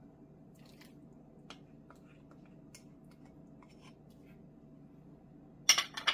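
Metal spoon scraping and tapping lightly against a small ceramic bowl, a scatter of faint clicks, then a loud sharp clink near the end as the small bowl is set down on the table.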